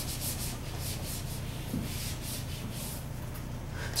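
Whiteboard eraser rubbing back and forth across a whiteboard in quick repeated strokes, wiping off marker writing; the strokes die away in the last second or so.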